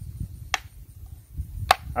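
Two sharp plastic clicks, about a second apart, as the pump assembly of a hand-pump garden sprayer is unscrewed from its tank, over a low rumble.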